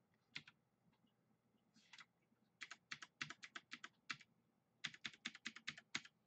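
Faint tapping of computer keyboard keys: a single click, then two quick runs of clicks at about five or six a second in the second half.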